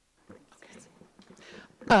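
A microphone comes on from dead silence, picking up faint, quiet murmured speech, then a speaker begins talking loudly just before the end.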